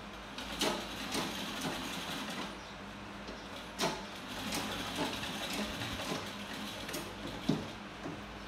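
Sewing machine running, a steady low hum with irregular clacks and knocks from its mechanism.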